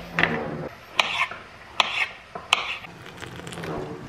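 Metal kitchen utensils clinking and scraping: about four sharp clicks spread over a few seconds, with rubbing and scraping between them.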